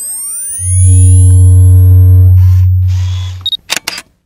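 Logo sting sound effect: rising swooshing glides, then a loud, deep steady low tone lasting about three seconds. It ends in a few quick camera-shutter clicks just before it cuts off.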